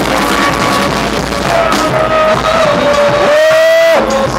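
New Orleans-style brass band playing live. Near the end, one long held high note rises slightly, is the loudest part, and cuts off sharply.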